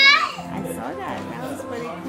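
Young children's voices at play, with a high-pitched squeal right at the start, over background music.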